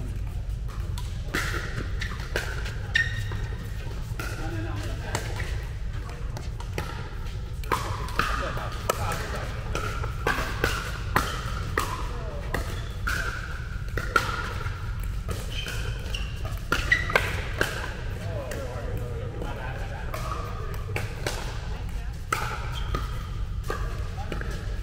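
Pickleball paddles striking plastic balls across several courts in a large indoor hall: irregular sharp pops, a few louder than the rest, over indistinct voices and a steady low hum.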